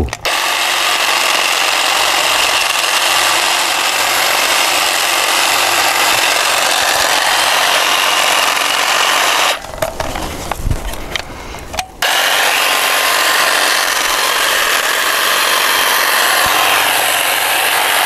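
Huter hedge trimmer running, its reciprocating blades shearing the top of a columnar thuja. It stops for about two seconds near the middle, then runs on.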